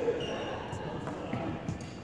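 Indistinct voices echoing in a large sports hall, with a few faint knocks.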